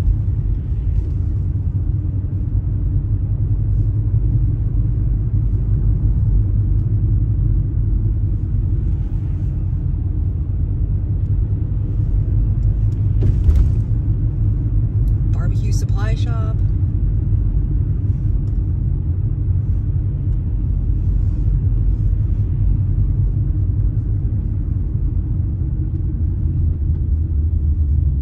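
Steady low rumble of road and engine noise inside a moving car's cabin. A short click comes about halfway through, and a brief voice-like sound follows a couple of seconds later.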